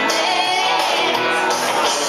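A woman singing a country song into a microphone over a karaoke backing track, amplified through the room's speakers.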